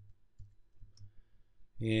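A couple of faint, sharp clicks from computer input while working in the software, over quiet room tone.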